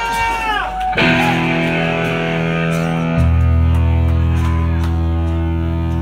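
Shouts and whoops for about the first second, then an electric guitar chord comes in suddenly and is held ringing. A bass guitar joins on a low held note about three seconds in, as the punk rock song starts.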